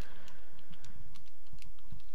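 Typing on a computer keyboard: a quick, irregular run of key clicks, over a steady low background rumble.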